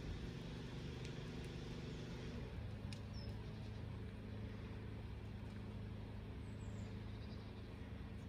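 A steady low engine hum, like a vehicle running, with a few faint clicks early on.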